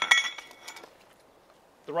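A sharp clink of a hard object being handled, with a short ringing tone that dies away within about a second.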